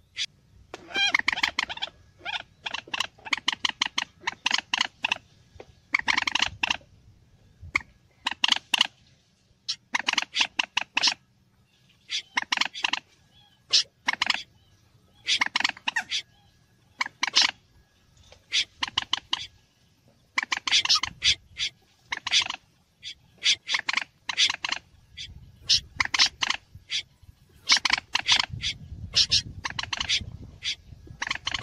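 Bird-lure recording of common moorhen and snipe calls mixed together: quick runs of short, sharp calls, bunched into clusters with brief pauses between, repeating throughout.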